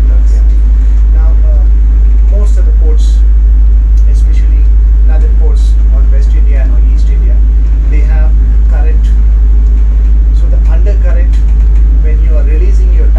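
A boat's engine running with a steady, very loud deep drone that fills the wheelhouse, heavier than the voices over it.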